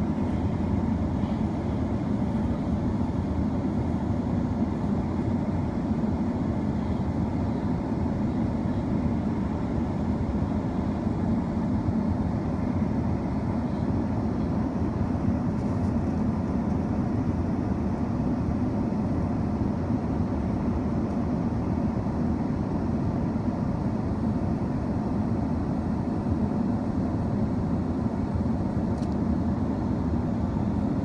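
Steady low rumble of an idling vehicle engine, unchanging throughout.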